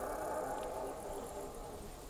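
A big cat's roar, one long drawn-out call that slowly fades out.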